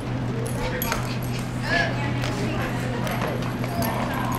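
Horses working cattle on arena dirt: scattered hoof knocks and one short call a little under two seconds in, over a steady low hum.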